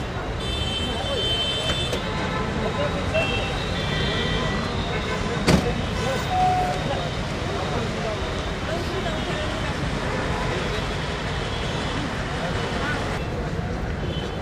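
Busy street traffic noise with vehicle horns tooting several times in the first few seconds, over indistinct voices. A single sharp knock sounds a little past five seconds.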